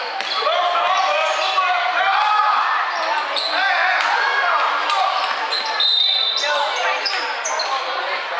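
Basketball game in a large sports hall: indistinct voices of boys calling out on court, with the ball bouncing, all echoing in the hall.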